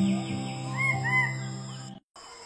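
Soft music with long held notes, over which a bird gives two short arched calls about a second in. The audio cuts off suddenly at the end.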